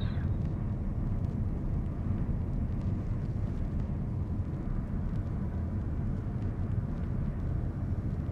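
Steady low rumble of an airliner in flight, heard from inside the cabin on approach with the flaps down, with a faint steady whine above it.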